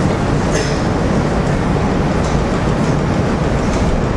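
Loud, steady rumbling noise, strongest in the low end, with a few faint clicks in it.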